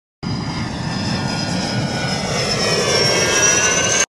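Airplane engine noise, as of a plane flying over, with a whine that rises slowly in pitch, cutting off suddenly at the end.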